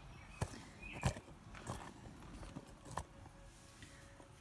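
About four light clicks and knocks as an ATV brake caliper with new pads is handled, the loose pads and metal parts tapping together.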